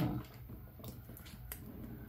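Quiet room tone with a few faint clicks and rustles of plastic art markers being handled as a brown marker is picked out.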